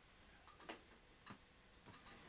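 Near silence with three faint ticks, evenly spaced a little over half a second apart.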